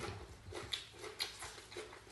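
Close-miked chewing: a steady run of soft, wet mouth smacks, about three to four a second, as a mouthful of food is eaten with the mouth closed.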